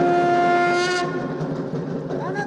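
A wind instrument holds one long, steady note, strong for about a second and then weaker.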